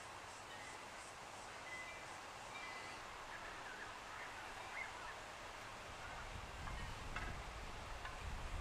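Faint outdoor background with scattered short chirps of distant birds. A low rumble on the microphone comes in about six and a half seconds in.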